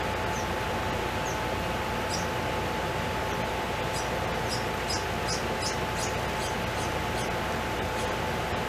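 Steady hiss of room and microphone noise with a faint constant hum-like tone, and a run of short, faint, high-pitched ticks, about three a second, in the middle.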